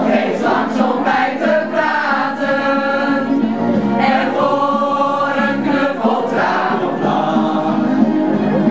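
A group of adult voices, mostly women, singing a song together, with two long held notes in the middle.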